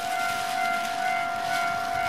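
A single steady, high-pitched tone held throughout, with a fainter higher note flickering on and off above it.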